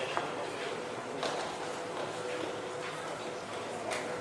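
Indoor riding-hall ambience: a murmur of background voices, with the soft footfalls of a horse walking on sand.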